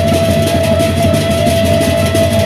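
Lombok gendang beleq gamelan ensemble playing: rapid, dense clashing of ceng-ceng hand cymbals over drums and gongs, with one long held high note sustained above.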